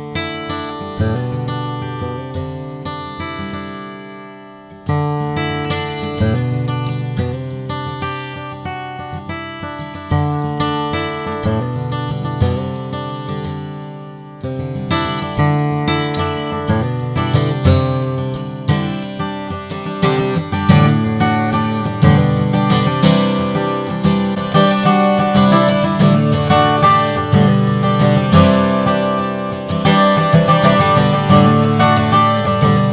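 Gallinaro Aqstica OSH handmade acoustic guitar, Sitka spruce top with Bolivian rosewood back and sides, strummed and picked in chord phrases that grow louder and busier in the second half. It is picked up by a condenser microphone placed near its offset soundhole.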